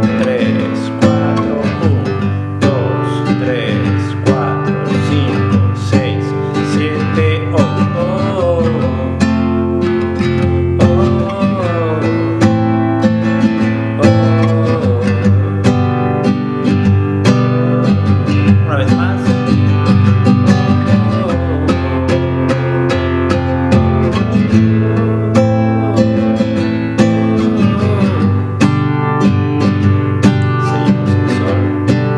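Nylon-string classical guitar strummed steadily through a chord progression of F major, A minor and G major, with no pauses.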